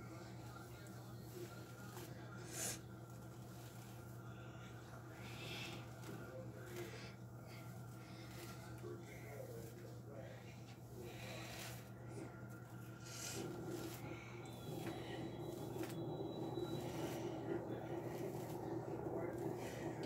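Hairbrush strokes swishing through long hair, repeated roughly every second, over a steady low hum. A louder muffled sound builds up in the last several seconds.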